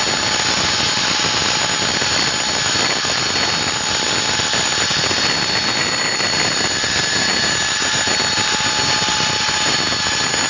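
A loud, steady mechanical drone with several high, held whining tones through it, unchanging throughout.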